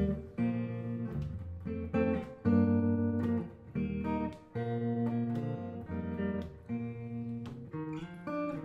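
Guitar introduction: chords strummed one at a time and left to ring, with short gaps between them.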